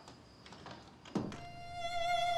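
A door shutting with a single dull thump about a second in, after a few faint clicks. A held violin note from the score swells in near the end.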